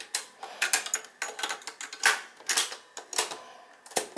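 Mechanical piano-key transport buttons of a 1987 Hitachi TRK-W350E twin cassette deck being pressed and released, with the tape stopped: a string of sharp clicks and clunks, about a dozen, unevenly spaced.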